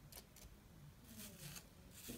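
A few faint strokes of a wooden hairbrush drawn through gel-coated hair.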